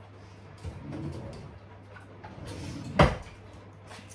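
Scissors being fetched from a drawer: some faint rummaging, then the drawer shut with a single sharp knock about three seconds in.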